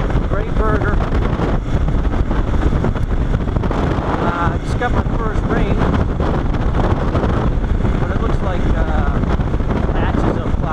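KTM 690 single-cylinder motorcycle engine running at riding speed on a gravel road, its pitch wavering up and down with the throttle, under heavy wind noise on the microphone.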